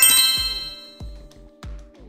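A bright chime sound effect rings out as a cascade of bell-like tones and fades away within the first second. Under it runs background music with a steady beat of low thumps about every two-thirds of a second.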